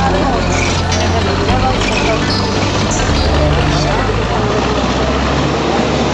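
Crawler bulldozer's diesel engine running steadily under load, its pitch stepping up and down a few times as it works.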